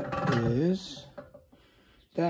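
A man's voice speaking briefly, drawing out one word, then near quiet.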